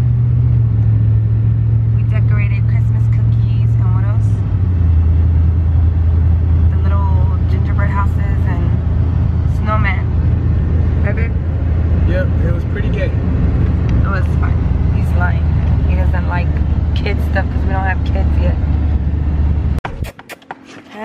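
Car engine and road noise heard from inside the cabin: a loud, steady low drone that steps down in pitch twice, about a second in and again around four and a half seconds in, then stops abruptly near the end.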